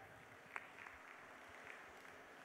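Near silence: faint room tone, with a single soft click about half a second in.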